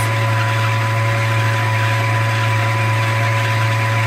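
Janome DC6050 sewing machine's motor running the bobbin winder steadily at constant speed, winding thread onto a bobbin; an even hum with a couple of fainter steady higher tones, unchanging throughout.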